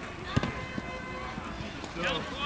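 Outdoor ambience at a youth football match: faint, distant voices of players and onlookers, with one sharp knock about half a second in.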